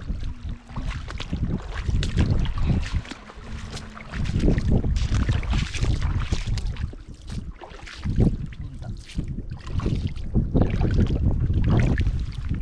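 Wind buffeting the microphone in uneven gusts, with irregular splashing and sloshing of shallow water as people wade.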